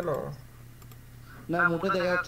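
A voice at the very start and again in the last half second, with a few faint clicks at a computer in between, over a steady low hum.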